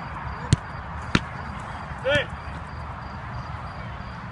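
Two sharp smacks of a football being struck, about half a second apart: a shot being kicked and the goalkeeper's save. About a second later comes a brief shout.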